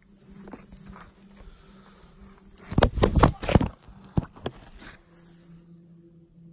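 Rustling and knocking handling noise, close to the microphone, in a dense cluster about two and a half seconds in, then a few single knocks, over a faint steady low buzz.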